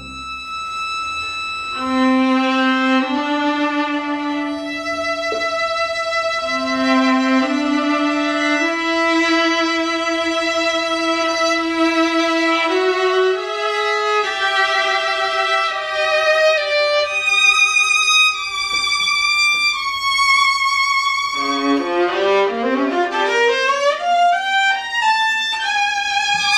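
Violin and viola playing a slow duet of long held notes, the lower line stepping gradually upward. About twenty-one seconds in, the music breaks into quick rising runs.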